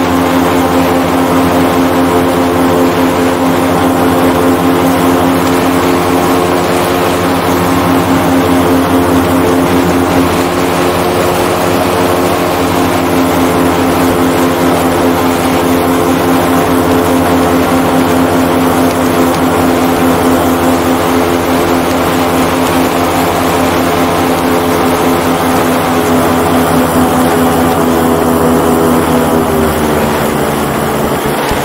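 Airboat engine and propeller running steadily at speed, loud, with the pitch dropping slightly near the end as it eases off.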